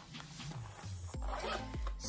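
A zipper on a small fabric pouch being pulled, a short rasp in the first second, over soft background music.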